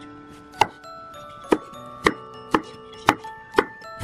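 Kitchen knife chopping through vegetables onto a wooden cutting board: six sharp strikes, about two a second.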